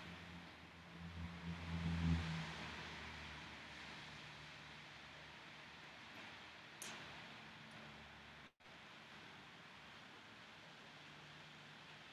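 Near silence in a quiet room, with a faint soft breath about one to two seconds in and a small click near the seven-second mark.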